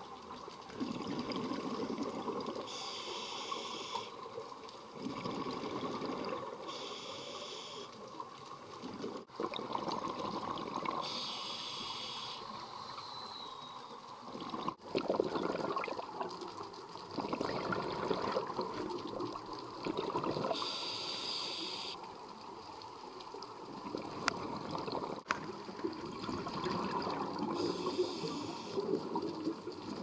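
Scuba diver breathing through a regulator underwater. A short hissing inhalation comes every six to eight seconds, alternating with longer bubbling exhalations.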